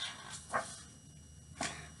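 Faint rustles of a picture book's pages being turned: two brief sounds, about half a second in and again about a second later, the second one crisper.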